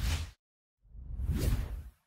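Whoosh sound effects of an animated logo: a short swish right at the start, then a longer whoosh that swells in about a second later and dies away near the end.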